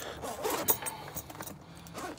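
Zipper on a Veto Pro Pac Tech Pac MC tool backpack being pulled open around the main compartment, an irregular scratchy run lasting about a second and a half.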